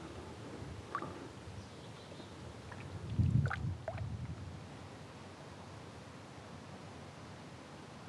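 Quiet sound of a kayak on a river: faint water movement with a few small knocks, and a louder low thump a little after three seconds.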